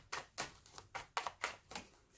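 A tarot deck being shuffled by hand: the cards click against each other in a quick, even run of about four clicks a second.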